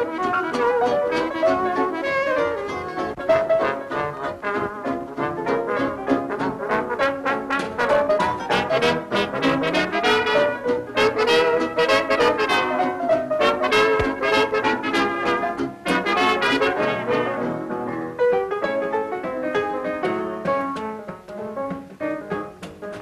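A 1930s swing dance band playing an instrumental passage, led by trumpets and trombone over a steady beat.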